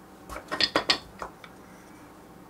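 Wooden Lincoln Logs pieces clacking against each other as flat boards are handled and laid onto the log walls. There are about six light clacks in quick succession in the first second and a half.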